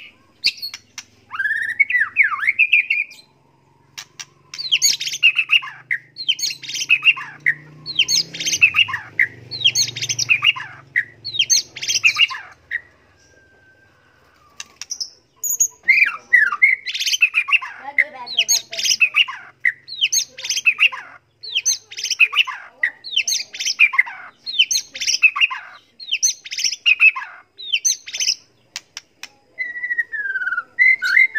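White-rumped shama (murai batu) singing in a cage: loud phrases of quick, varied notes repeated about once a second, with a pause of a few seconds near the middle before the phrases resume.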